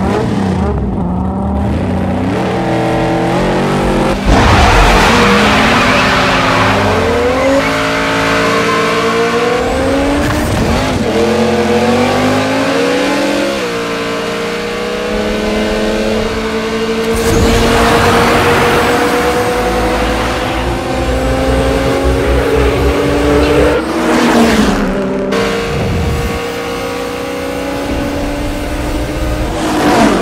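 Two race-tuned car engines, a supercharged Dodge Charger V8 and a Toyota Supra, revving at the line and then launching about four seconds in. They accelerate hard through the gears: each engine note climbs, drops back at a shift and climbs again. Tire squeal comes in at the launch.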